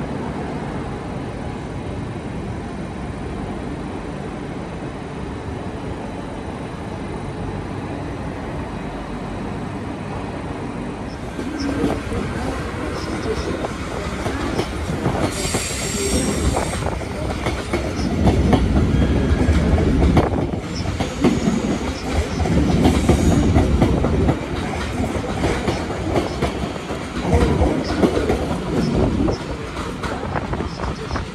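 A Dutch NS ICM (Koploper) intercity train running past along the platform, its wheels clattering over rail joints, with a brief high wheel squeal about fifteen seconds in. Before that there is only a steady hum with a faint high tone.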